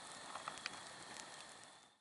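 Faint crackling of a campfire: a few sharp pops over a soft hiss, fading out near the end.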